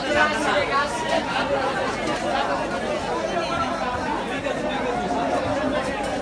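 Many people talking at once in a crowded market hall: a steady babble of overlapping voices, none standing out clearly.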